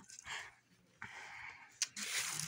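A person breathing out heavily close to the microphone: a short breathy puff just after the start, then a longer sigh-like exhale, with a sharp click near the end.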